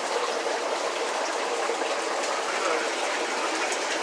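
Steady rush of running and splashing water from aquarium tanks.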